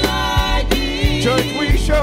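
Gospel vocal group singing with band accompaniment, over a steady beat and bass line.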